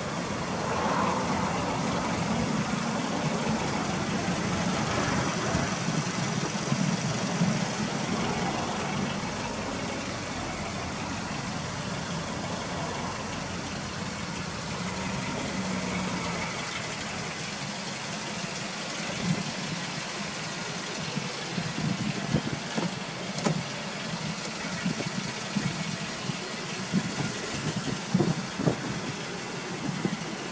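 Toyota Estima Lucida minivan's engine idling steadily, with scattered clicks and knocks over the second half.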